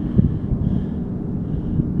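Wind buffeting the phone's microphone: a steady low rumble with a faint even hum underneath and a couple of small knocks.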